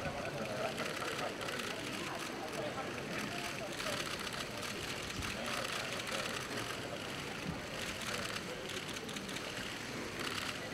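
Indistinct chatter of many people talking at once, with a steady stream of faint clicks from press camera shutters.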